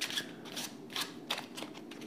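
A deck of playing cards being shuffled by hand, overhand style: a run of soft, irregular card clicks and slides.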